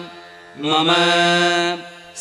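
A solo voice chanting a Sanskrit puja mantra: a brief pause, then one long syllable held on a steady pitch for about a second, then another pause.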